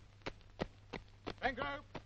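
Boots of several soldiers running on a hard parade square, about three footfalls a second, over the steady low hum of an old film soundtrack. A shouted command starts about a second and a half in.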